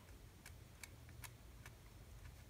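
Faint, evenly spaced ticks, about two or three a second, of a small file or sanding stick stroking across a plastic miniature part to roughen the joint for glue.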